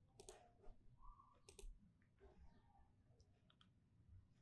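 A few faint, scattered clicks from a computer keyboard and mouse, in near silence.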